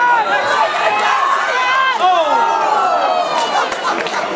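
Several voices shouting and calling over one another, in high, rising and falling calls, with no clear words.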